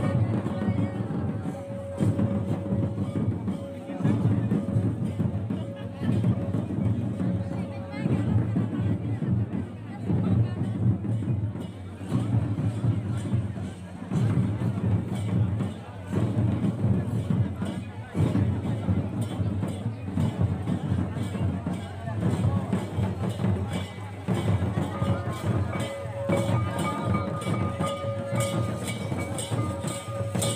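Santali folk dance music led by drums, in a beat cycle that repeats about every two seconds, with voices in it. A steady held tone sounds over it at the start and again near the end.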